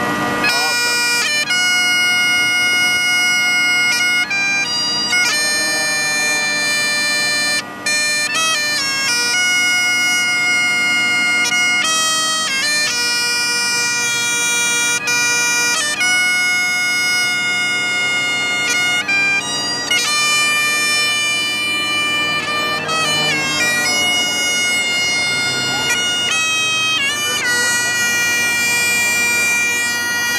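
Scottish Great Highland bagpipe playing a tune: the chanter's melody steps from note to note over the pipes' unbroken steady drones.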